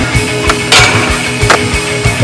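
Skateboard deck and wheels hitting the ground: a sharp clack about half a second in, a louder, longer crack just after it, and another clack about a second and a half in, over rock music.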